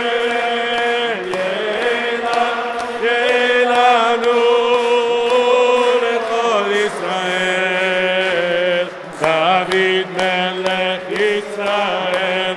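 A voice chanting a Hebrew liturgical melody in long held notes, with a couple of short breaks near the end.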